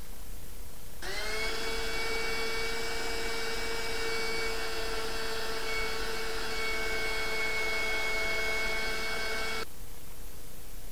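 Cordless drill motor spinning up about a second in, running at a steady high whine for some eight and a half seconds, then stopping abruptly.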